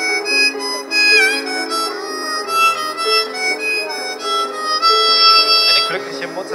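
A blues harp (diatonic harmonica) plays an instrumental solo over piano chords, with a bent note about a second in.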